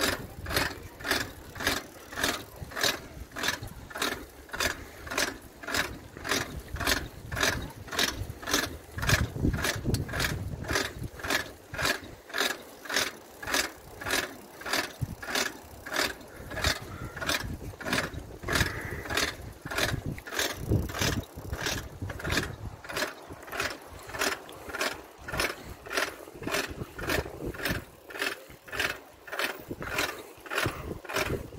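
Footsteps on stone paving at a steady walking pace, about two steps a second, with wind rumbling on the microphone in places.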